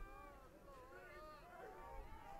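Faint, distant high-pitched calls and shouts from girls' voices, several overlapping, rising and falling in pitch.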